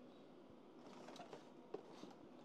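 Near silence with faint rustling and small ticks of cables and leads being handled on a workbench. One sharp little click comes near the end.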